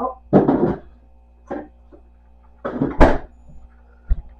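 Kitchen handling noises as frozen cherries are got out: a short scuffling sound about half a second in, a brief knock, and a sharp clunk at about three seconds, the loudest sound. A faint steady hum runs underneath.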